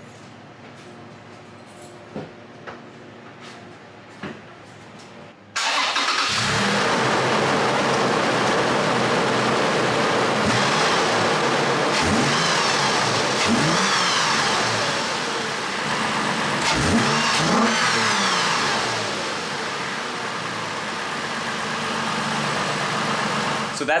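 Toyota 4Runner's 4.0-litre V6 fitted with a TRD cold air intake, coming in loudly about five seconds in and then revved several times, its pitch rising and falling, with the intake growl heard as the revs climb.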